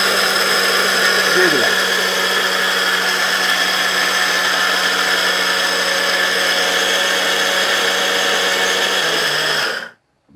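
Maharaja Whiteline mixer grinder running at full speed, its small stainless-steel jar dry-grinding spice to powder. It makes a loud, steady motor whine that stops suddenly near the end when it is switched off.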